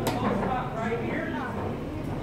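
Indistinct talking from people nearby, over a steady low rumble, with one sharp click at the very start.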